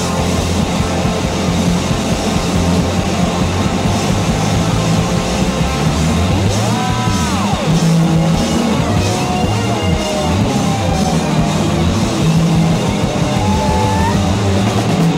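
Live electric blues-rock band playing an instrumental passage. A steel guitar slides up in pitch and back down about halfway through, over bass guitar, drums and hand percussion.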